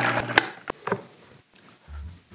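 Countertop blender motor running with a steady whir while blending a green herb sauce, cutting off about half a second in and spinning down. A few light clicks and a soft thump follow near the end.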